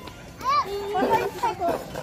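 Children's and adults' voices calling out and chattering, with a high-pitched call about half a second in.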